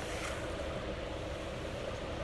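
Steady background noise, a low rumble with a light hiss, with no distinct event.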